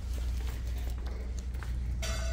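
Footsteps on a hard, polished corridor floor as a person walks along, over a steady low hum.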